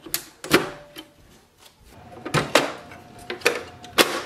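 Irregular plastic clicks and knocks as a toner cartridge is slid into a Pantum M6507NW laser printer and seated, about eight in all, the sharpest about half a second in.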